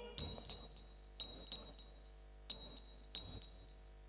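Small metal hand cymbals struck in short groups of about three strikes, each ringing briefly, keeping the beat for the dance while the singing pauses.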